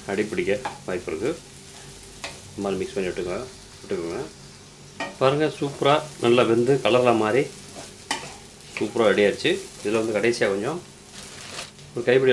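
Wooden spatula stirring and scraping chopped flat beans around a nonstick pan, in bursts of squeaky scraping strokes with short pauses, over the sizzle of the beans frying.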